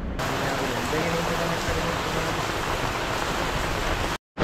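Heavy rain falling on wet paved ground, a steady hiss that starts suddenly just after the start, with a voice faintly beneath it.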